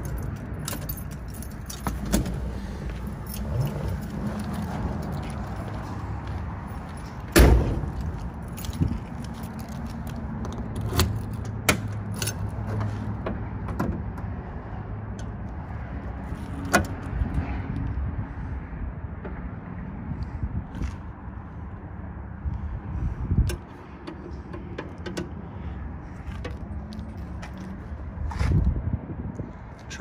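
Car keys jangling and clicking as the ignition key is worked out of the steering column with the four-speed shifter in reverse, as this Ford requires. A single loud car door shut comes about seven seconds in, then more key rattles and light clicks as the keys are carried to the trunk.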